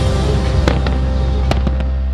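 Fireworks bursting overhead in sharp cracks: two about two-thirds of a second in and a quick run of three around a second and a half. Background music with long held tones plays underneath.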